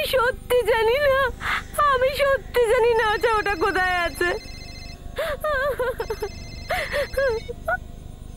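A woman's voice talking in a high pitch. Over it, a mobile phone rings twice with a high, steady electronic tone, about three seconds in and again about six seconds in.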